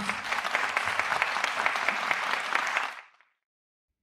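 Audience applauding, fading out about three seconds in.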